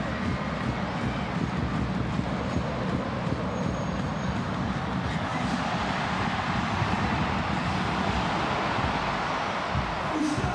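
Football stadium crowd noise, a steady roar of many fans that swells slightly about halfway through as the attack nears goal.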